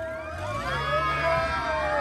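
Crowd of voices talking and calling over one another, with a low steady hum underneath.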